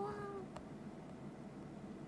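A short, steady pitched call with overtones, ending about half a second in, followed by a single click.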